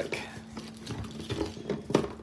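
Coiled heavy-gauge inverter cables being handled in their plastic wrapping: light rustling and small knocks, with a sharper knock near the end.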